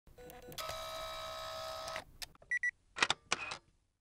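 Synthesized intro sound effects: a held electronic tone for about a second and a half, then two short high beeps and a few quick clicks.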